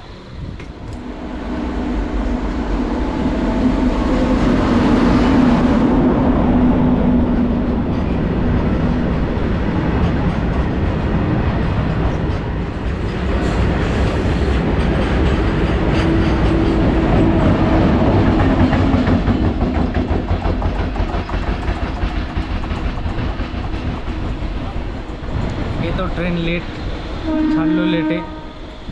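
A freight train of open wagons running past close alongside on the next track, loud: a rolling rumble of wheels with clatter over the rail joints. A train horn sounds in long steady notes for several seconds near the start and again around the middle.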